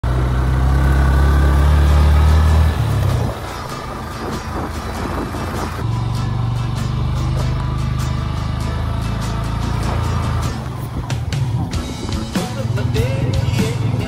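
Motorcycle engine running as the bike rides along, a steady low rumble that drops away about three seconds in and comes back about six seconds in, with background music underneath.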